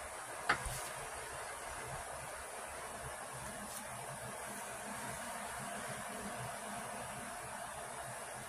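Steady background hiss, with one sharp click about half a second in as the nail-stamping tools (silicone stamper and plastic scraper card) knock against the metal stamping plate.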